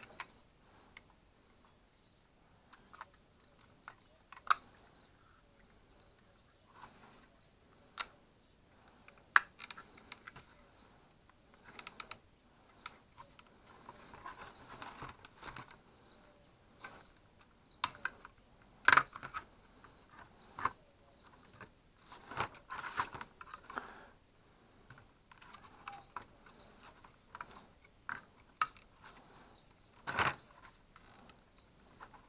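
Hands handling a Bosch AL 60 DV 2425 charger's circuit board and black plastic housing with a screwdriver: scattered sharp plastic clicks and knocks, with bursts of scraping and rattling. The loudest click comes near the middle.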